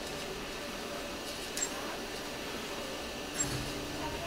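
Steady room hum of a hospital ICU room with two faint short ticks, one at about a second and a half and one near three and a half seconds.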